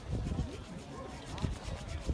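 Faint, indistinct voices of spectators talking trackside, over a low, fluctuating rumble of wind on the microphone.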